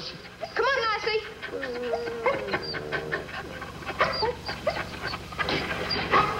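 Several kennelled dogs barking and whining over one another in short overlapping calls, with one longer drawn-out whine or howl about one and a half seconds in.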